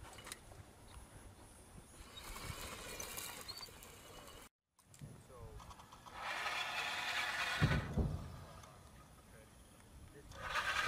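Electric drive of the MUTT robot's remote-controlled machine-gun mount whirring as the gun traverses, loudest for about two seconds in the second half and ending in a few low knocks. A fainter, similar whirr comes earlier, before a cut.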